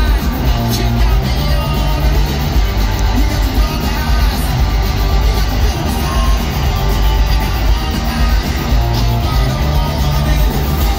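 Garage rock band playing live through a stage PA at full volume: electric guitars, bass and drums with a singer, heard from among the crowd.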